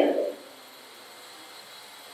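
A man's voice trails off at the very start, then a pause of faint, steady room hiss.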